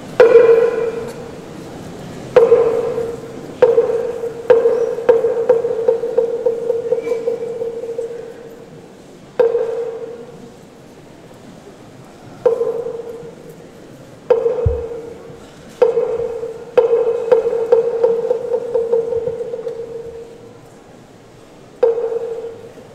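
A struck ritual percussion instrument with a ringing, pitched tone. It sounds in single strikes a second or several apart, and twice a strike runs on into a quick roll of strokes that dies away over a few seconds.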